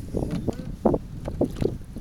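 Water lapping and slapping against the hull of a small fishing boat, in a few irregular splashes, with wind rumbling on the microphone.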